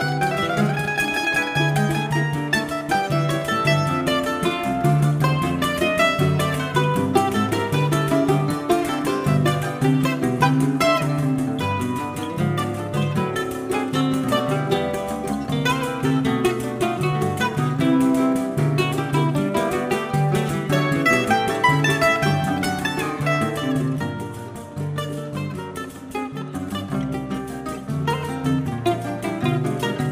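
Live choro played on bandolim (Brazilian mandolin) and nylon-string acoustic guitars: a plucked melody over a moving guitar bass line, dropping softer for a few seconds about three-quarters of the way through.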